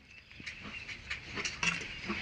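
Faint rustling of cloth as pieces of fabric are lifted and moved about on a table, getting a little louder toward the end.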